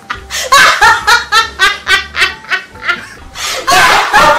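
An anime character's loud laughter, a long run of quick 'ha-ha-ha' pulses about three a second, with a low hum underneath.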